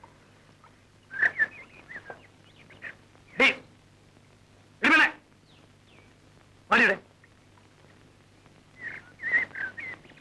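Birds calling: short chirping calls about a second in and again near the end, with three louder single calls spaced through the middle.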